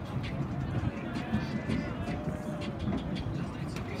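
Steady outdoor background noise with faint, distant voices of people around the track.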